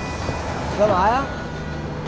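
Steady city street traffic noise, with a short wavering vocal sound about a second in.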